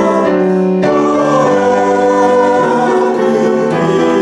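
A small chorus of one woman and four men singing a song together, with held notes that change every second or so.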